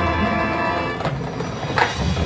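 Marching band playing: held chords fade out during the first second over a steady low bass, then two sharp percussion strikes ring out about a second in and just before the end, the second one louder.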